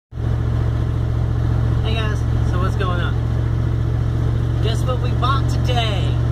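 A vehicle's engine running steadily, heard from inside the cab as a loud, even low hum, with short bits of voice about two seconds in and near the end.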